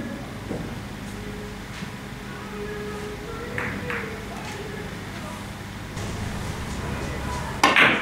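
Billiard balls clicking on a carom table: a few faint knocks in the first four seconds, then near the end the loudest sound, a sharp cluster of clicks as the cue tip strikes the cue ball and it hits another ball. Faint voices murmur underneath.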